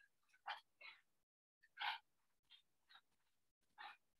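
Crooked knife slicing shavings off a dry cedar board: about six brief, faint scraping strokes, the clearest about two seconds in.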